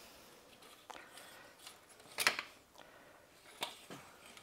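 Engine oil dipstick being pushed back into its tube: a few faint scrapes and light clicks, the clearest about two seconds in.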